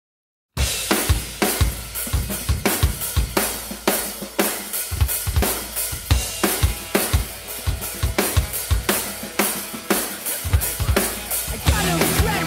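Sakae Almighty Birch acoustic drum kit with Sabian cymbals played as an unaccompanied rock groove: kick, snare and cymbal hits in a steady rhythm, starting about half a second in. Just before the end the rest of the song's band recording comes in under the drums.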